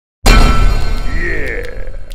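Cinematic intro sound effect: a sudden loud boom about a quarter second in, decaying over the next two seconds with a swooping, shimmering sweep in the middle.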